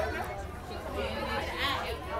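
Indistinct chatter of several people talking at once, over a low steady hum.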